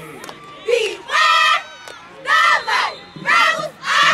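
Cheerleaders shouting a chant together in unison, a series of loud shouted calls about half a second each, coming roughly once a second.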